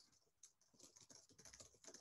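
Faint typing on a computer keyboard: a quick, irregular run of light key clicks starting about half a second in, as a web search is typed.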